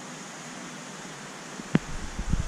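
Steady hiss of water circulation and pumps among large aquarium tanks. A single sharp click comes near the end, followed by a low handling rumble as the camera starts to move.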